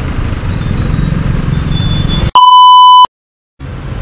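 Steady engine and road noise of a Honda Click 125i scooter riding in traffic, cut about two seconds in by a loud edited-in censor bleep, a single 1 kHz tone lasting under a second, followed by half a second of dead silence before the riding noise returns.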